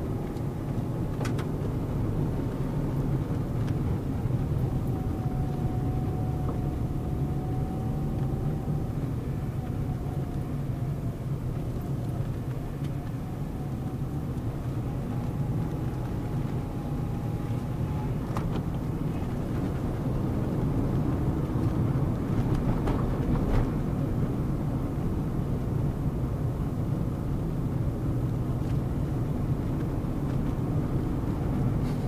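Car interior noise while driving: a steady low engine and tyre rumble, with a faint thin whine that wavers slightly in pitch and a few brief knocks.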